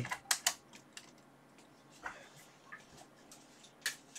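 A few sharp clicks: two close together right at the start, faint ticks in the middle and another click near the end. They are typical of wall light switches being flipped off to darken the room.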